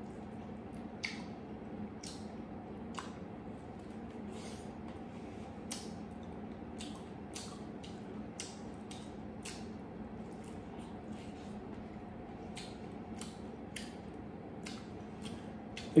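A man chewing mouthfuls of roasted sweet waxy corn bitten off the cob, with small wet, sticky clicks and smacks about twice a second over a faint steady hum.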